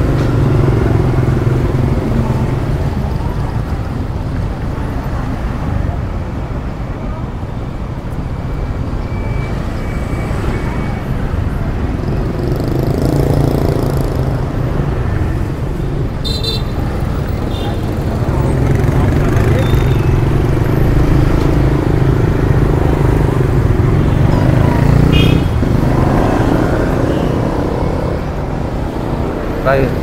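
Steady street traffic of motorbikes and cars running close by, with a low engine rumble and short horn toots about sixteen seconds in and again near twenty-five seconds.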